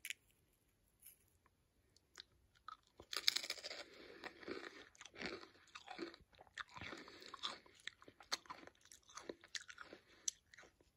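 A person biting and chewing a salsa-dipped Lay's Stax potato crisp: crisp crunching and chewing with many irregular crackles, starting about three seconds in.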